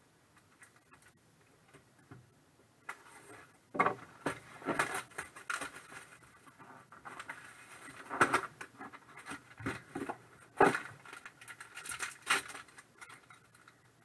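Crinkling and rustling of foil and plastic packaging in irregular bursts as a trading-card box is unpacked and a silver foil pouch is pulled out and opened, after a few near-silent seconds.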